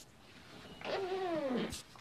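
A single drawn-out vocal call that slides steadily down in pitch, followed right after by a sharp knock from the phone being handled.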